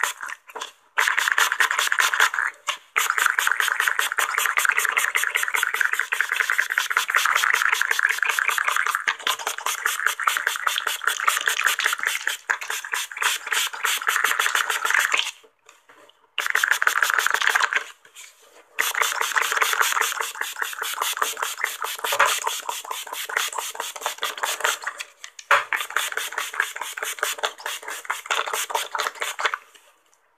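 Spray bottle being pumped very fast, giving long runs of quick hissing sprays that follow one another without a break and stop briefly a few times.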